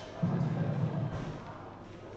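Electronic soft-tip dartboard machine playing its low buzzing scoring sound for about a second, the machine's signal that a dart has registered, here one worth 60.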